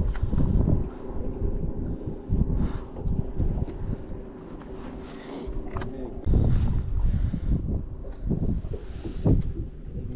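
Wind buffeting the microphone in uneven low gusts, loudest near the start and again about six seconds in, with a few handling knocks and a faint steady hum underneath.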